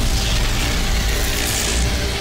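Sci-fi cartoon sound effect of a virtual body glitching apart into pixels: a steady noisy whoosh with a deep rumble under it, over the soundtrack music.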